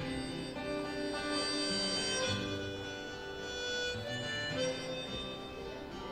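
Harmonica playing an instrumental break of held notes that change every second or so, over acoustic guitar accompaniment.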